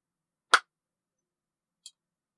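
A single sharp click about half a second in, then a faint high tick near the end.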